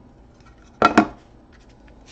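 Two sharp plastic clacks in quick succession about a second in: a clear hard-plastic card holder being set down on a cardboard trading-card box.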